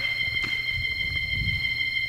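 Church organ holding one high note, a steady high-pitched tone that does not change.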